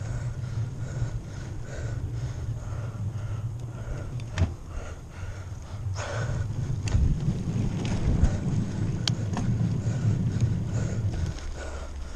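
Wind buffeting a handlebar-mounted action camera and the rumble of a bicycle being ridden fast over a rough trail, with a few sharp knocks and rattles from bumps; the rumble cuts off suddenly near the end.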